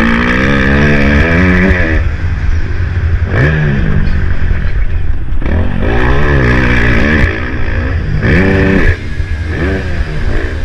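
Motocross bike engine heard on board while riding a dirt track, revving up and dropping back several times as the throttle opens and closes, over heavy wind rumble on the microphone.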